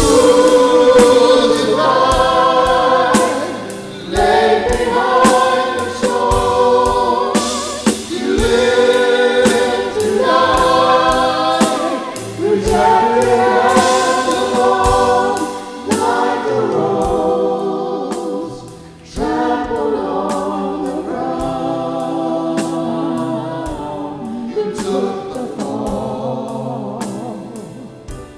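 A small worship team of mixed male and female voices singing a slow worship song together, backed by piano, bass guitar and drums. The singing comes in phrases of about four seconds with short breaks between them, with drum and cymbal strikes most noticeable in the first few seconds.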